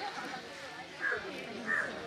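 Two short crow caws, about a second in and again near the end, heard faintly over low background noise in a pause between speech.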